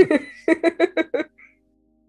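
Laughter: a quick run of about six short pitched "ha" pulses, stopping about a second and a half in.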